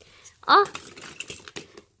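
Small plastic toys clicking and knocking against each other as a hand rummages through a wicker basket of toys, in faint scattered clicks.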